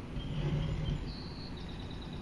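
Short high bird chirps over a steady low background rumble, with a brief low swell about half a second in.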